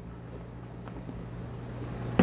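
Quiet room tone: a steady low electrical hum, with one faint click about a second in.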